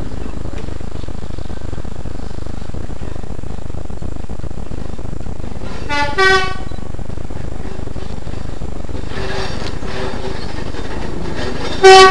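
BR Class 122 single-car diesel railcar sounding its horn as it approaches: a short lower note followed by a higher one about six seconds in, fainter toots around nine to eleven seconds, and a loud series of short blasts starting just before the end, over a steady background rumble.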